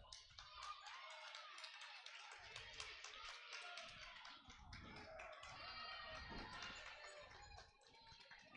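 Near silence: faint ice-rink ambience with distant, indistinct voices and a few small clicks.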